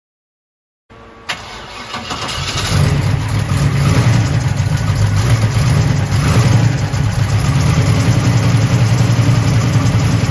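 Street-rod 350 cubic-inch V8 with dual four-barrel Edelbrock carburetors and dual exhaust on a cold start: a click about a second in, a brief start-up as it catches, then it settles into a loud, steady idle.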